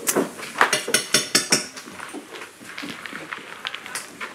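A quick run of sharp clicks and clinks of small hard objects being handled, about eight in the first second and a half, then fainter scattered ticks.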